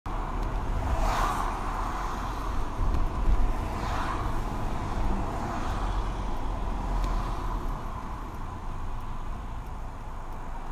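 Car driving in city traffic, heard from inside the cabin through a dashcam: a steady low rumble of engine and road noise, with two brief swells of noise about one and four seconds in. The noise eases a little near the end as the car slows.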